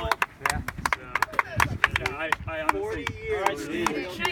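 Scattered hand clapping from a few people, sharp irregular claps a few times a second, mixed with chatter and laughter.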